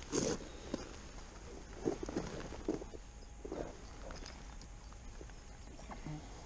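A small hooked fish splashing at the water's surface as it is pulled to the bank by hand, a few short, irregular splashes, the loudest right at the start.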